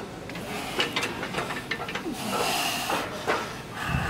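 A bench-press lifter under a loaded barbell taking one big hissing breath about two seconds in, after a few light knocks and clicks. It is the single breath he holds through the whole set to keep his body tight.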